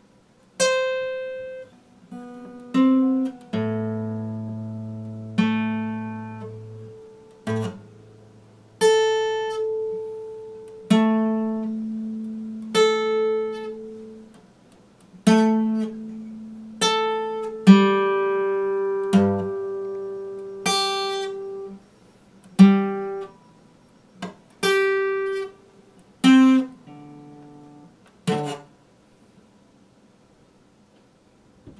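Epiphone acoustic guitar fingerpicked slowly: single notes and chords plucked one at a time, each left to ring and die away, with short pauses between.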